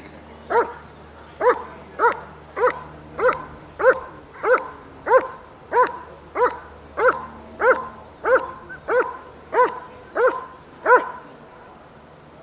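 A dog barking repeatedly at a steady, even pace, about one and a half barks a second, for some ten seconds.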